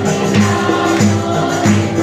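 Live band playing a Christmas song: harmonica over an electronic keyboard and conga drums, with a group singing along to a steady beat.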